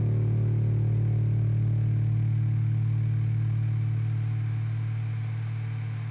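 Music: a single low note held at the end of an instrumental track, a steady hum whose higher overtones die away over the first few seconds while the note slowly fades.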